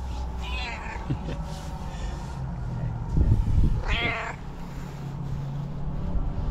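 Tuxedo cat meowing loudly twice: a short meow near the start and a longer, clearer one about four seconds in, with low thuds just before it.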